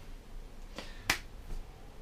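A single sharp click about a second in, with a fainter click just before it, over quiet room tone.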